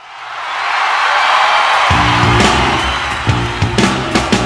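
Live rock recording fading in on crowd noise from the audience. About two seconds in, the band comes in with drums and bass guitar on the opening of the song.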